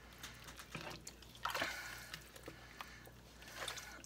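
Faint sloshing of broth and sliced mushrooms stirred with a wooden spoon in an enamelled pot, with a few light knocks of the spoon; a louder swish about one and a half seconds in.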